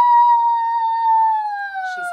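A young girl imitating a wolf howl: one long, high, held note that slowly sinks in pitch.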